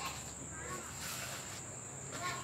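Faint, steady, high-pitched chirring of crickets in the background.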